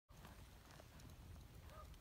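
Faint hoofbeats of a horse moving over soft arena dirt, with a short faint chirp near the end.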